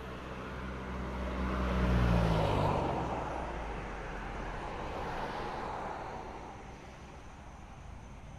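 A motor vehicle driving past on the road: its engine note gets louder, peaks about two seconds in and drops in pitch as it goes by, leaving tyre and road noise that fades away.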